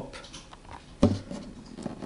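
Faint scratching and rustling of fingers handling a classical guitar's bridge and saddle, with a short knock about a second in.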